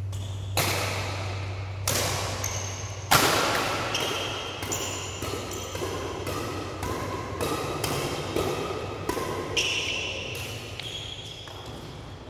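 Badminton rackets striking a shuttlecock with sharp cracks, about a dozen hits, the loudest about three seconds in, echoing in a large hall, with short high squeaks of shoes on the court floor between them.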